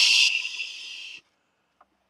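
A person's long hushing "shhhh", strong at first, then thinning and trailing away after about a second.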